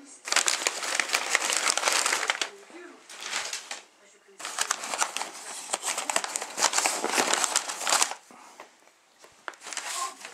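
Plastic packing wrap crinkling and crumpling as it is handled, in two long spells, the second starting about four and a half seconds in.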